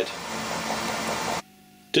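Colchester screw-cutting lathe running steadily under power, its spindle speed turned down on the motor inverter. The steady running sound cuts off suddenly about one and a half seconds in.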